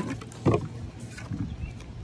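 A deck of oracle cards being shuffled by hand: light card-on-card clicks and rustles, with a dull thump about half a second in.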